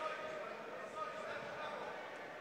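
Faint crowd murmur in a fight hall, with distant voices calling out, typical of cornermen shouting instructions to a fighter.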